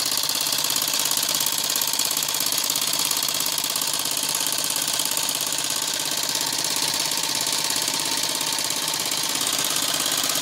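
Small 12 V car air compressor converted into a vacuum pump, its electric motor and piston running steadily with a rapid chatter. It is drawing the air out of a sealed plastic bottle.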